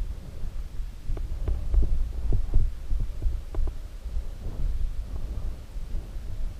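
Mountain bike rolling over a dirt trail: a low, muffled rumble with irregular knocks and rattles from the bike as it goes over bumps, heard through a defective GoPro's muffled microphone.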